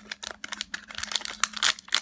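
Foil wrapper of a Pokémon TCG booster pack crinkling and tearing as it is opened by hand: a quick, irregular run of crackles and clicks.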